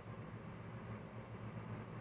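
Faint steady low hum with light hiss: room tone.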